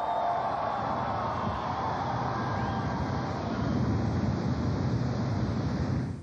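A steady rushing roar of flames, with no music or voice over it.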